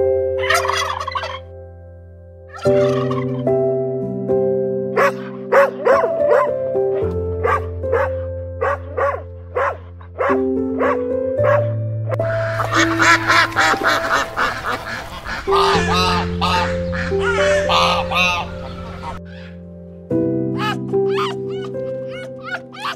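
Domestic turkeys gobbling and clucking in repeated short calls over soft, held piano notes. About halfway through, a denser run of animal calls takes over for several seconds.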